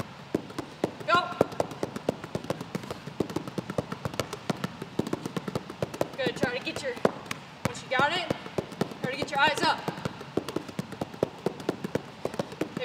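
A basketball dribbled rapidly and low on a hardwood gym floor in a spider dribble at full speed: quick, even bounces, about five or six a second, with no break. A few brief squeaky pitched sounds sit over the bouncing, about a second in and again between about six and ten seconds.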